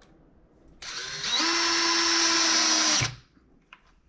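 DeWalt cordless drill starting about a second in, spinning up to a steady whine and running for about two seconds before stopping abruptly.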